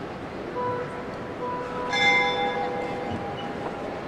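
Church bells ringing: a few separate strikes, the loudest about two seconds in, each tone ringing on and fading, over a steady background noise.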